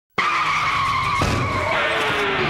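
Car tyre screech sound effect: one high, held squeal lasting about a second, followed by a lower rumble as it fades.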